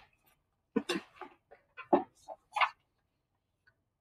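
A red plastic classroom tray being fetched and handled: a few short, scattered knocks and rattles in the first three seconds, then quiet.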